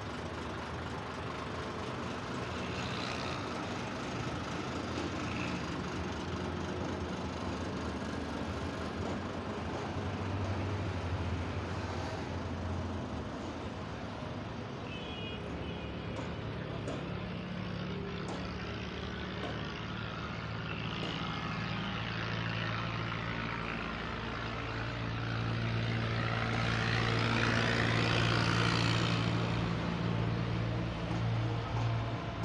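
A heavy truck's diesel engine idling, a steady low hum. It swells louder for a few seconds near the end.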